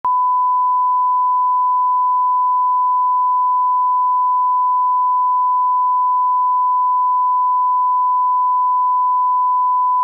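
Steady 1 kHz sine-wave test tone, a single unbroken pure pitch: the line-up reference tone laid under the slate and colour bars at the head of a broadcast tape.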